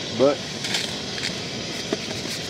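Backpacking stove burner hissing steadily as it heats water, with a few faint clicks.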